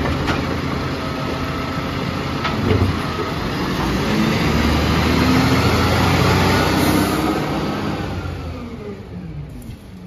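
Volvo FE side-loader garbage truck's diesel engine running and revving up while its automated arm tips a wheelie bin, with a couple of short knocks early on. Near the end the engine sound fades and drops in pitch as the truck pulls away.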